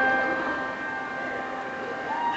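Grand piano chord ringing on and slowly fading away.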